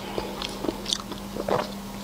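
Close-miked chewing of soft food: a scatter of short wet smacks and clicks from the mouth, over a faint steady electrical hum.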